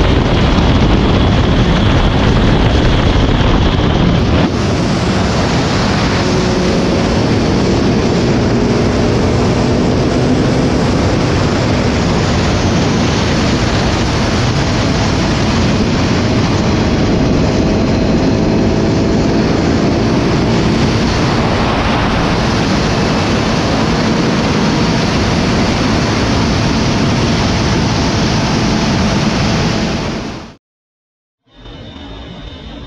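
Motorcycles riding at highway speed, with heavy wind rushing over the camera microphone and engine hum underneath that rises and falls gently in pitch.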